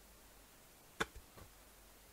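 Handling noise from hands flexing an EPP foam flying wing: one sharp click about a second in, followed by two fainter ticks, against a quiet room.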